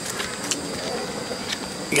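Quiet outdoor ambience at dusk: a steady hiss of background noise with faint, steady high-pitched insect chirring. There is a soft click about half a second in.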